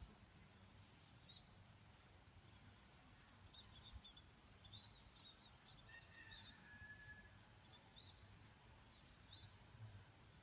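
Near silence, with faint bird chirps: short, high calls every second or so, and one longer, lower whistled note a little past the middle.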